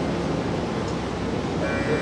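Harmonium drone thinning out between phrases, leaving a noisy room hum, with a new held chord coming in about a second and a half in.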